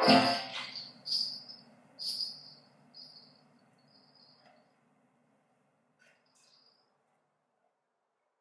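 A piano chord at the start fading under a small high-pitched bell struck about once a second, each stroke softer, until the ringing dies away about halfway through; a couple of faint taps follow near the end.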